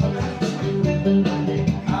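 Karaoke backing track playing: an instrumental with guitar and bass, which started just before.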